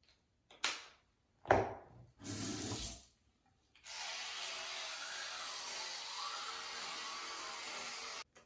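A few clicks and knocks of a toothbrush and toothpaste being handled. Then, from about four seconds in, teeth being brushed at the sink: a steady, even hiss that cuts off suddenly near the end.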